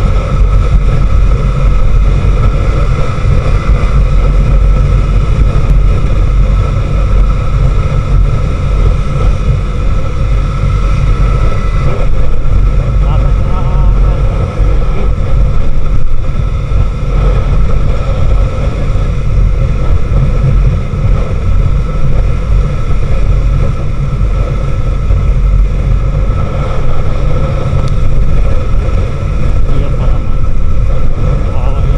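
Wind buffeting the microphone of a camera on a moving motorcycle, a loud, constant low rumble, with the motorcycle's engine running underneath and a steady high whine.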